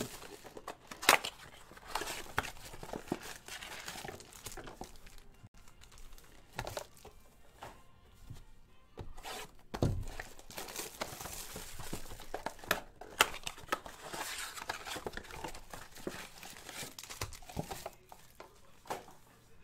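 Plastic shrink-wrap crinkling and tearing as trading-card blaster boxes are unwrapped and opened, with irregular rustling and clicks of cardboard and packs being handled. There is a single dull thump about ten seconds in.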